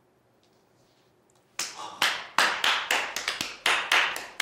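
Near silence, then a few people clapping their hands, starting about one and a half seconds in and going on as quick, uneven claps.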